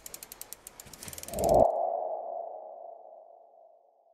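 Logo-animation sound effect: a fast run of ratchet-like ticks for about a second and a half, then a single ringing tone that fades out over about two seconds.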